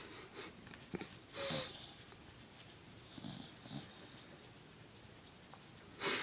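A small dog making faint breathing and sniffing noises as she burrows her face into a blanket. There are a few short bursts, the loudest about a second and a half in, then it goes quiet.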